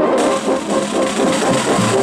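Marching drum and bugle corps playing: a held brass chord breaks off at the start and a quicker passage of brass over drums follows.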